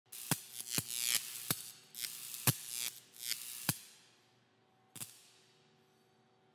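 Electronic intro sting: sharp percussive hits with rising whooshes between them, the last hit about five seconds in, then a fade.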